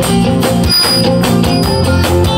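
Rock band playing live through a PA: electric guitars, bass and drums in a loud guitar-led stretch without singing.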